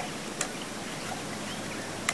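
Steady outdoor background hiss with one light click about half a second in, from handling the trail camera.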